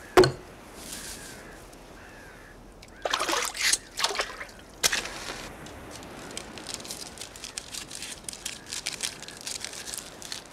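Film soundtrack foley from a stop-motion scene. A sharp knock comes first, then scratchy rustles about three and five seconds in, then fine crackling of a tiny campfire over faint water trickling and lapping.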